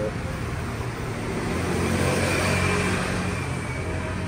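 Street traffic on a city road beside the table, one vehicle passing and growing loudest about halfway through.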